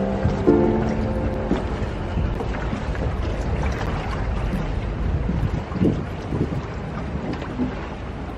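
Ambience on board a gondola on a canal: low wind rumble on the microphone over water noise, with a few held musical notes in the first second and a half.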